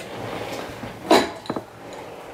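Makeup items being handled and rummaged through in search of a brow pencil: a soft rustling, then a sharp clack a little past a second in, followed by a couple of lighter clicks.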